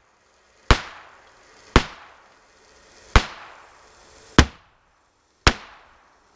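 Ruger Mark III .22 LR semi-automatic pistol firing five shots at an irregular pace, roughly one a second, each crack followed by a short fading echo.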